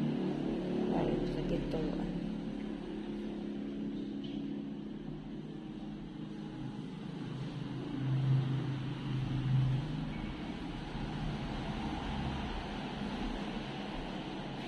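A low, steady motor hum, growing louder for about two seconds around eight seconds in, with faint voices in the first couple of seconds.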